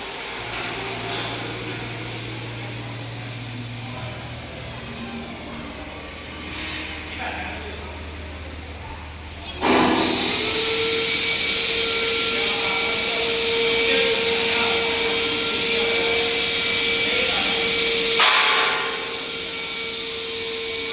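Copper wire drawing machinery running: a low steady hum at first, then about ten seconds in a louder steady whine with hiss comes in suddenly and holds, with a brief louder swell near the end.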